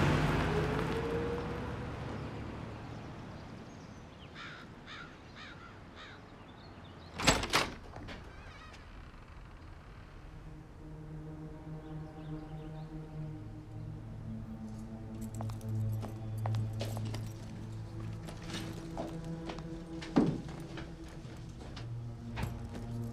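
A taxi pulling away and fading out, then a single heavy thunk about seven seconds in, like the front door being unlocked and pushed open. From about eleven seconds a low, sustained drone of background score, with one sharp knock near the end.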